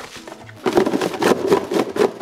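Chunks of Korean radish dusted with chili flakes and salt being tossed by hand in a plastic container, rattling and clattering continuously from about half a second in, over light background music.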